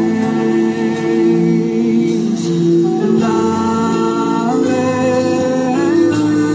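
Congregational worship singing with instrumental accompaniment, moving between long held notes.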